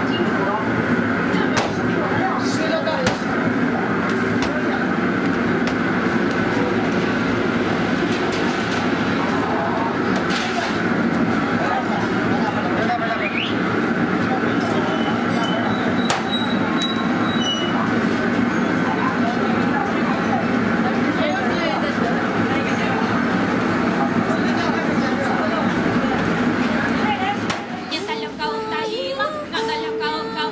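Busy restaurant-kitchen noise: a steady rushing din with people talking in the background and a few scattered clicks and clatters.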